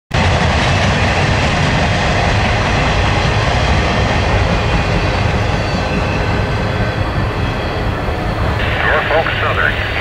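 Steady rushing noise of a double-stack freight train rolling past and away. About eight and a half seconds in, a trackside defect detector's automated synthesized voice begins its announcement over a radio.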